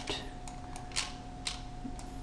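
Three sharp computer mouse clicks about half a second apart, over a faint steady hum.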